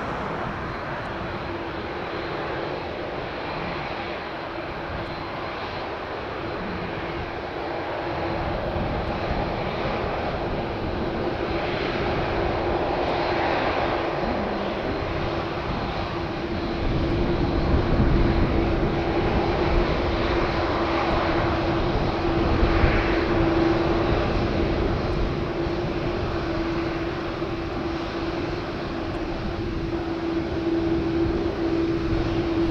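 Boeing 747-8F freighter's four GEnx-2B jet engines at taxi power as the aircraft taxis past: a steady jet noise with one steady humming tone running through it. A deeper rumble swells in about seventeen seconds in as the aircraft draws nearer.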